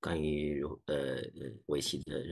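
A man's voice over a video call: speech the recogniser did not catch, opening with one long drawn-out vowel sound, then a few short spoken bits.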